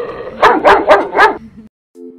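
A St. Bernard barking four times in quick succession, loud, starting about half a second in.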